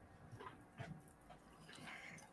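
Near silence: room tone, with a few faint, brief sounds.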